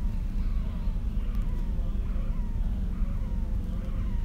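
Pulsatile tinnitus heard from inside the ear, recorded through a phone microphone held against it: a loud, steady low rumble with a faint falling 'wiu' that repeats with each heartbeat, about every two-thirds of a second. It is the sign of an arteriovenous fistula that jaw surgery caused.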